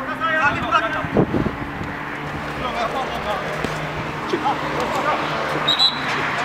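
Players' shouts and calls during a small-sided football match, over a steady outdoor background with a faint low hum. Two sharp thuds come about a second in.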